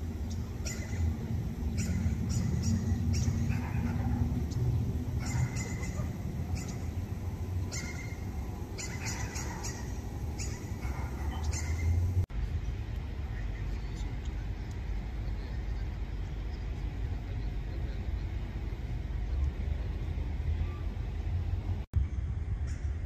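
Outdoor street ambience: a steady low rumble with faint voices and scattered short high chirps during the first half, then a plainer, steadier rumble after a cut about twelve seconds in.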